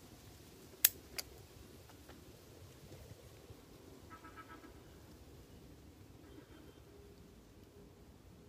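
A cigarette lighter clicked twice in quick succession, one sharp loud click and a smaller one a third of a second after, as it is struck to light a cigarette.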